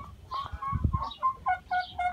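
Birds calling: a string of short pitched notes, several a second, some higher and some lower.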